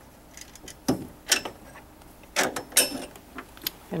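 Several sharp metallic clinks and scrapes, in two clusters after about a second of quiet: a steel bolt and wrenches being worked at a massage chair's backrest actuator mounting point.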